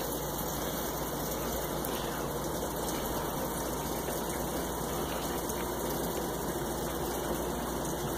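A steady, even rushing noise with no breaks or changes.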